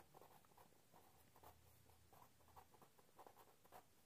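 Faint scratching of a pen writing on paper in short, irregular strokes.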